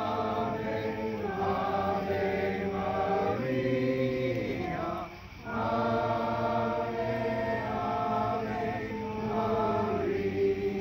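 A small group of men singing a hymn together in sustained, chant-like phrases, with a short break between phrases about five seconds in.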